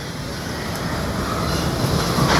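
Steady rumbling noise that slowly grows louder, from an advert's soundtrack played over a hall's loudspeakers.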